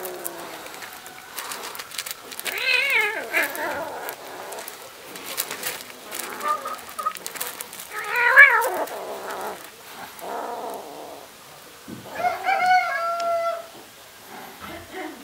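A kitten meowing again and again, with about three louder wavering calls a few seconds apart and fainter ones between; the loudest comes about eight seconds in.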